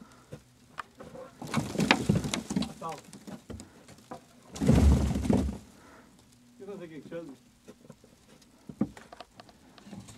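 A snow brush scraping snow and ice off a car's rear window, heard from inside the car: two bouts of scraping, the second ending in a heavy thump against the glass.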